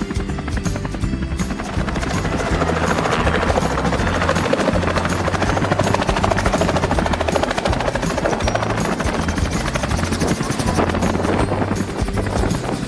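Small two-blade helicopter's rotor and engine running as it lifts off the snow, getting louder about two seconds in, with music playing along.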